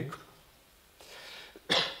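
A man coughs once, short and sharp, into a handheld microphone near the end, after about a second of near quiet.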